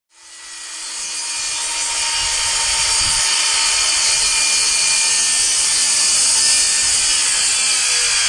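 Circular saw cutting through wood, a steady high hiss that fades in over the first second or two, then holds steady.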